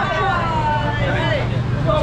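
People's voices at a busy seafood stall: one voice held in a long call that falls in pitch over the first second, with other chatter around it, over a steady low hum.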